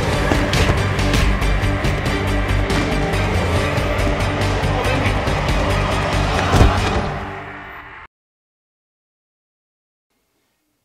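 A film soundtrack of music mixed with sharp impact sound effects, with one loud hit about six and a half seconds in. It fades away and stops dead just after eight seconds, leaving silence.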